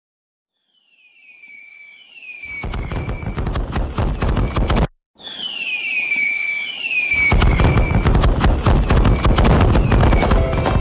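Fireworks sound effect: a falling whistle and then dense, rapid crackling, beginning from silence about a second in. It cuts out abruptly near the middle and starts again with another whistle and louder crackling.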